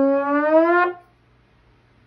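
Trombone playing one held note that slides slowly upward in pitch, then cuts off sharply just under a second in.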